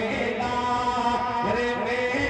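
A man singing a naat into a microphone, stretching long, drawn-out melodic notes that glide between pitches without words, heard through a public-address system.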